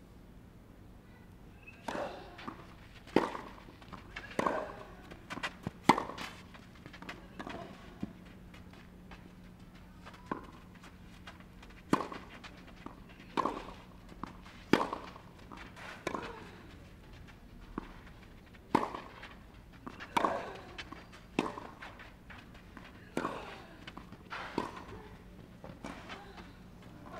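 Tennis rally on a clay court: a serve about two seconds in, then a long exchange of sharp racket strikes on the ball, roughly one every one and a half seconds, with fainter ball bounces between them. A low steady hum runs underneath.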